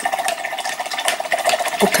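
A small motor buzzing steadily, with a fast, even rattle in it.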